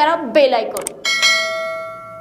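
A click sound effect, then a single bell ding that rings out and fades over about a second: the notification-bell sound effect of a subscribe-button animation.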